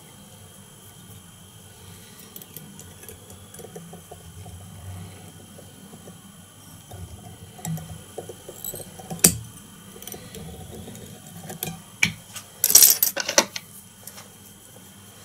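Small clicks and metallic clinks from fly-tying tools being handled at the vise. There are a few isolated clicks, then a quick cluster of clinks near the end.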